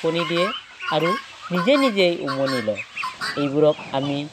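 Domestic fowl calling: a series of short, pitched clucking calls, about six in four seconds, some rising and falling in pitch.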